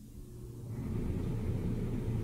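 Central air conditioning kicking in: air rushing out of a wall supply vent, building up over about the first second into a steady low rumble with a faint hum.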